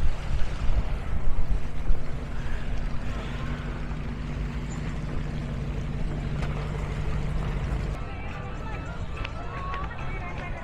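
A steady low engine hum over wind and water noise, which cuts off about eight seconds in. Faint voices of a crowd of people follow.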